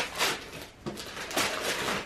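Wrapping paper being torn and rustled off a present, in two bursts: a short one at the start and a longer one from just past halfway.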